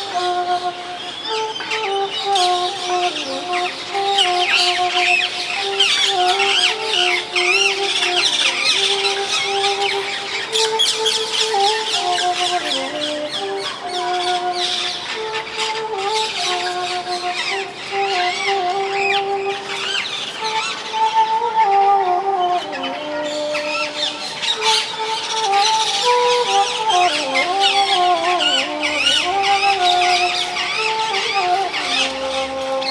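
Bansuri (bamboo transverse flute) playing a slow melody of held notes with occasional sliding ornaments. Dense, continuous chirping of many birds sounds with it.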